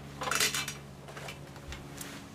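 A brief clatter and rustle about half a second in as a person moves close to the camera, then a few faint clicks, over a steady low hum.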